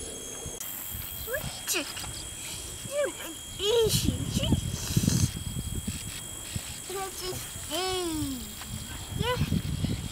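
A man's wordless vocal sounds: short pitched calls that glide up and down, with one longer falling call about eight seconds in. Low rumbling noise comes and goes beneath them, loudest around four to five seconds in.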